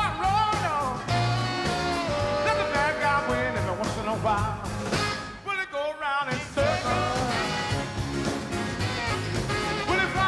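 Live band playing an up-tempo rock and soul number with drums, bass, keyboards and saxophone, with a voice singing over it. The drums and bass drop out for about a second, around the middle, then come back in.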